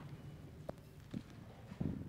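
Faint footsteps of a man walking across a carpeted platform: a few soft, low thumps, with a light click about two-thirds of a second in.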